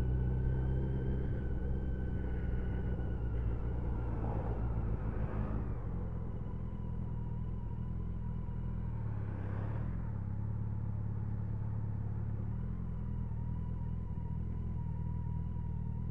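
Motorcycle engine running steadily at low road speed, heard from the bike itself, easing off a little partway through. Two faint swells of traffic noise pass during it.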